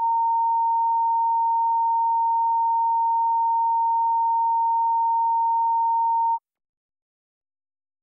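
A single steady sine tone near 1 kHz, the broadcast feed's line-up test tone, held for about six seconds and then cut off abruptly.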